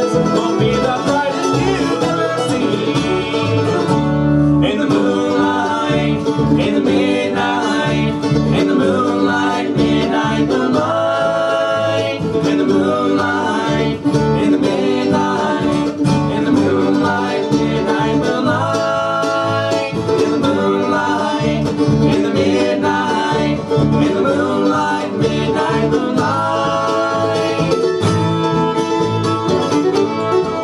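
Bluegrass band playing live: fiddle, mandolin, acoustic guitar and upright bass together.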